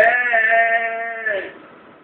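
A man's voice holding one long sung note at the end of a line of unaccompanied devotional singing, sinking slightly in pitch and fading out after about a second and a half.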